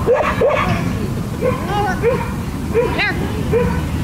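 A dog barking in short, high yips, about eight in four seconds, the loudest and highest about three seconds in.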